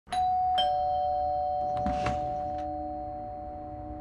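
Two-note ding-dong doorbell chime: a higher note, then a lower one about half a second later, both ringing on and slowly fading. A few brief soft noises come about two seconds in.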